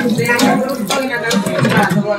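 Indistinct voices with several sharp clinks of steel utensils, about half a second apart, at a food stall.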